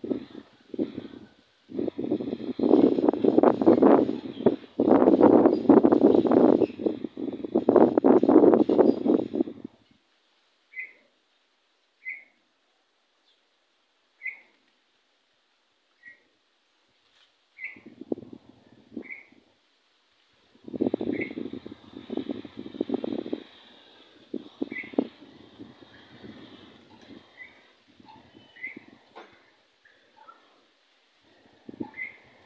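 A small bird gives short high chirps, one every second or two, through the second half. Two long stretches of loud rustling noise, one in the first third and a shorter one past the middle, are louder than the chirps.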